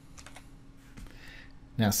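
A few faint clicks of computer keyboard keys over a steady low hum.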